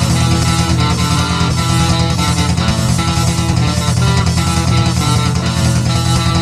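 Instrumental passage of a hard rock / thrash song: a steady electric guitar riff over bass guitar and drums, without vocals.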